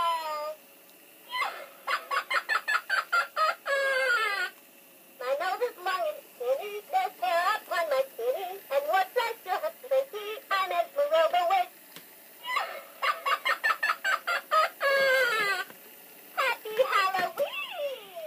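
Gemmy animated stirring witch's voice from her built-in speaker: rapid cackling laughter near the start and again about two-thirds through, with sing-song lines between that are hard to make out.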